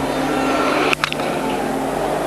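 Steady crowd murmur of a cricket ground, with a single sharp crack about a second in: the ball coming off the inside edge of the bat onto the stumps as the batsman is bowled.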